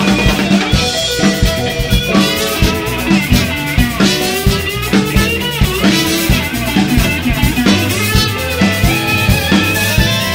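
Live blues band playing an instrumental passage with no vocals: electric guitar and bass over a drum kit keeping a steady beat, with trumpet.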